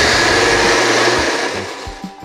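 Electric mixer grinder running at full speed, grinding urad dal in a steel jar with a steady loud whirr. It starts to wind down during the last half second.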